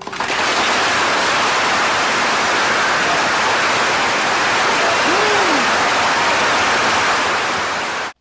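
Audience applauding at the end of a live performance of the song, a steady dense clatter that cuts off abruptly at the very end.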